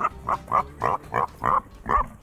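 A pig grunting in a quick run of short oinks, about seven in two seconds.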